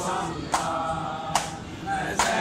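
Crowd of men chanting a noha (mourning lament) together, with sharp unison chest-beating slaps of matam falling in time with it, twice in these two seconds.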